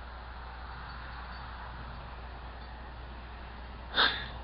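Steady outdoor night background noise with a constant low hum, with no distinct source standing out. A brief, sharp, loud sound (a click or knock) hits at the very end.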